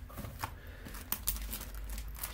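Paper goods and plastic-wrapped kit items being handled and set down on a tabletop: faint rustling with a few light taps.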